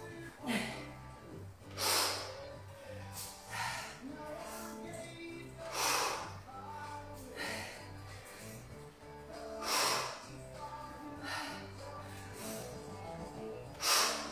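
Sharp, hissing exhalations from a woman straining through barbell clean-and-press reps, one every second or two, over background music.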